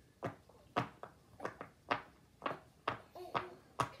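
Silicone pop-it fidget toy being pressed bubble by bubble from its "bad side", one sharp pop after another, about nine pops at roughly two a second.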